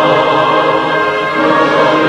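Choir singing held notes with orchestral accompaniment, a choral cantata.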